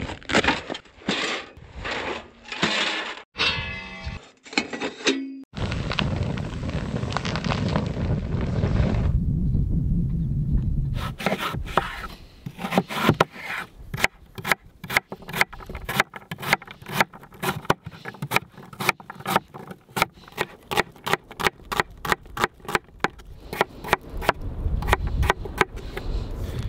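Chef's knife chopping vegetables into cubes on a wooden cutting board: a quick, even run of sharp chops, about three a second, through the second half. Before it come rustling and a steady rushing noise.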